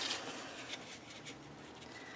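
Faint rustling and rubbing of scrapbook paper being handled and slid into place on an album page, a little louder at the start.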